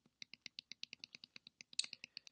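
Computer keyboard keys tapped quickly and repeatedly: a faint, even run of clicks, about eight a second, with a slightly louder click near the end.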